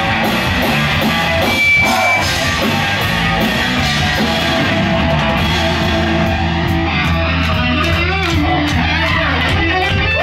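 A live band playing loudly: distorted electric guitar over a steady bass guitar line and a drum kit with regular cymbal hits.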